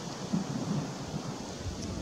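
Wind buffeting the camera's microphone: a low, uneven rumble that rises and falls.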